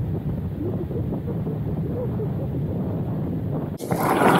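Wind rushing over the camera microphone of a skydiver during parachute deployment, a steady low rumble. Just before the end a sudden louder noise cuts in as the canopy opens.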